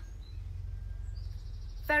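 A steady low rumble of background noise, with a faint high trill about one and a half seconds in.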